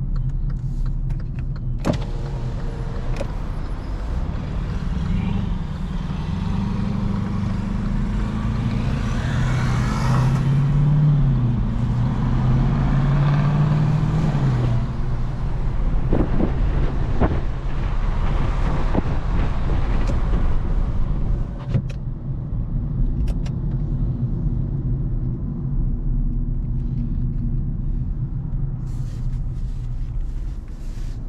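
2022 Kia Cerato's petrol engine and tyre noise heard from inside the cabin as the car pulls away and gathers speed. The engine note rises over several seconds and wavers before easing off about twenty seconds in, with a few sharp clicks along the way.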